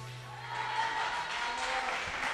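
A song's backing track dying away on a held low note as a studio audience begins to clap and cheer faintly at the end of a performance.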